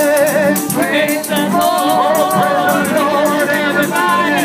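Gospel music with voices singing a wavering melody over a steady beat of rattling percussion.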